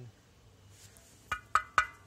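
Three quick knocks on the bare steel of a stripped hot water tank, each with a short metallic ring, starting a little over a second in. He is tapping to check the steel, which seems solid.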